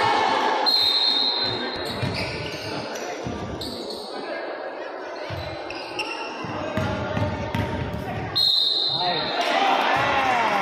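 A basketball being dribbled on a hardwood court in a large echoing gym, with players' voices calling out. Two brief high-pitched tones sound, about a second in and again near the end.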